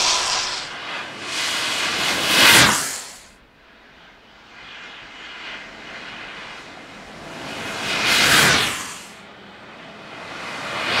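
A downhill skateboard passing at high speed: the rushing roar of its urethane wheels on asphalt and of wind swells up and fades away, twice, peaking about two and a half seconds in and again near the end.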